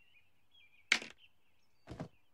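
Two short, sharp knocks about a second apart over a faint, thin high-pitched chirping background, with no speech.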